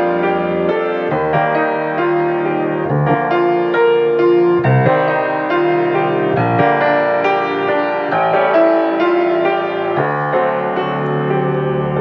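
Piano playing a G-minor passage marked Tempestoso: a steady run of sixteenth-note broken chords in the right hand under single melody notes played by the left hand crossing over the top.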